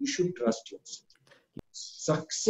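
A man talking, with one short sharp click about one and a half seconds in.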